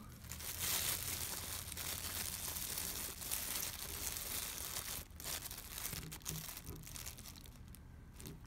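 Clear plastic wrapping crinkling as hands work it loose around a baseball: dense, continuous crinkling for about the first five seconds, then lighter, scattered crinkles.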